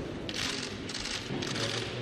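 Camera shutters firing in rapid bursts, each a quick run of clicks lasting a fraction of a second, repeating several times.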